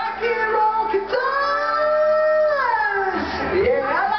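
A man sings a rock vocal over a backing track: a long held note about a second in that slides down in pitch near the end.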